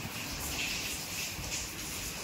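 Heavy rain falling: a steady, even hiss.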